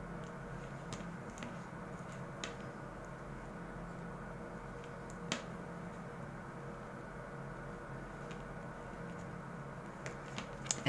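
Quiet handling of a bent metal needle drawing 2 mm polypropylene cord through the stitching of a bag base: a few small clicks, the sharpest about five seconds in, over a steady low room hum.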